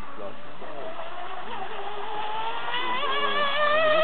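Radio-controlled racing speedboat's motor running at speed, a high steady tone whose pitch rises slowly and which grows louder in the second half as the boat approaches.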